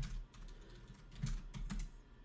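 Computer keyboard being typed on: a scattering of short key clicks.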